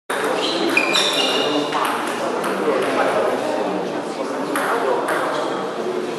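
Celluloid table tennis ball striking the bats and table in a rally, short ringing clicks that come thickest in the first two seconds, with a few more later, over people's voices in the hall.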